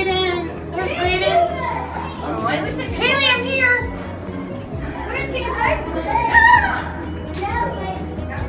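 Several children's high voices calling out and chattering, over music playing in the background.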